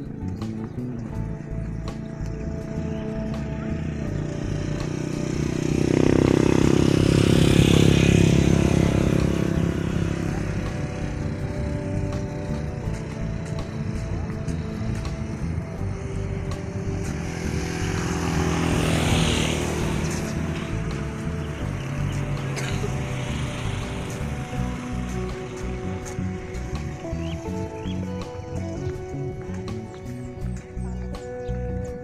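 Background music plays throughout, and a rushing noise swells up and fades twice, loudest about six to nine seconds in and again briefly near twenty seconds.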